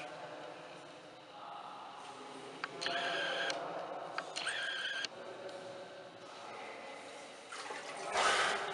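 Faint water sounds in a cave siphon pool, with two brief louder gurgles about three and four and a half seconds in.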